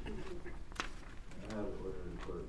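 A man's voice in a courtroom: drawn-out, low, hum-like voice sounds around the judge's 'go ahead', with one sharp click a little under a second in.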